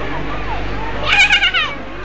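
A single high-pitched squeal from a voice, about a second in, wavering for roughly half a second over background chatter.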